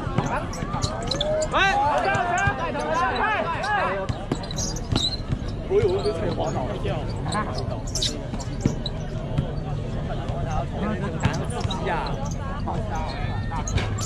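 A basketball bouncing on an outdoor hard court during play, with sharp bounce impacts scattered throughout. Spectators shout over it, loudest a couple of seconds in.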